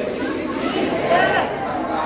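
A crowd of devotees' voices, many shouting and chanting at once, with one voice standing out a little after a second in.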